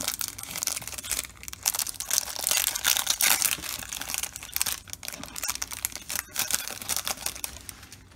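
Clear plastic wrapper of a Topps Baseball Card Day pack crinkling and tearing as it is ripped open by hand. There is a dense run of crackles, thickest in the first half, thinning out and quieter near the end.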